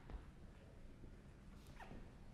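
Near silence: room tone of a hushed hall, with a faint knock just after the start and a brief faint squeak near the end.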